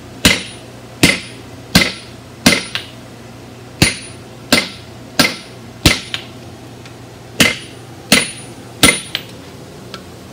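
Sledgehammer blows struck on a handled top tool held against hot iron on a steel anvil, a steady rhythm of about one and a half blows a second, each with a brief metallic ring. A few blows are followed by a light bounce tap, and the rhythm pauses for a moment just after halfway.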